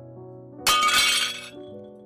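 Glass shattering once, a sudden crash about two-thirds of a second in that rings out for under a second, over soft background music of sustained tones.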